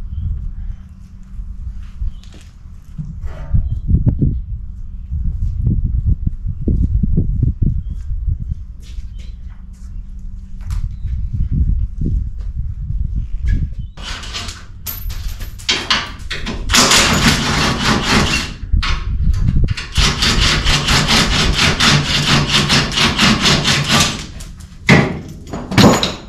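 Wind rumbling on the microphone, then an impact wrench hammering in two bursts of a few seconds each, with clicks and rattles of tools and parts between, as front-end bolts are taken off the truck.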